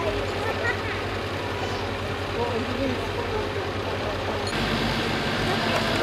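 Diesel engine of a lorry-mounted crane truck running steadily, a low hum, with voices faintly behind it. The hum shifts abruptly about four and a half seconds in.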